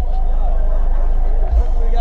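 Car-audio subwoofers playing a loud, deep bass note held steadily, with crowd chatter above it. The bass pressure is strong enough to crack the truck's plexiglass windshield.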